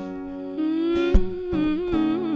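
Acoustic guitar strummed, with a wordless hummed vocal line entering about half a second in; the voice's pitch wavers and slides.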